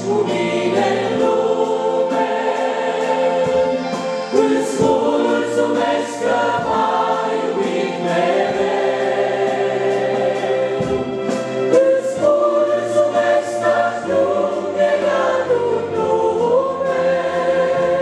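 A church congregation singing a hymn together, men's and women's voices in many-voiced unison, holding long notes.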